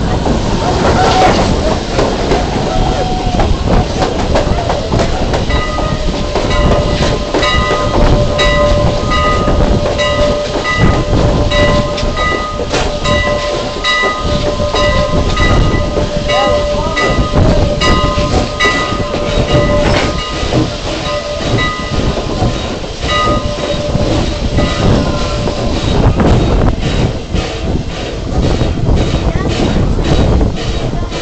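Strasburg Rail Road train pulling out, its wheels rumbling and clacking over the rail joints. A steady high-pitched ringing tone of several notes together sounds from about six seconds in and stops a few seconds before the end.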